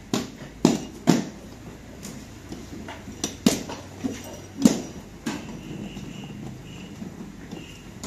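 Irregular sharp knocks and clacks from car-seat upholstery work, as seat parts, frames and tools are handled and bumped: about six hits in the first five seconds, the loudest two in the middle.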